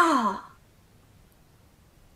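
A woman's short voiced sigh that falls in pitch, over within the first half second.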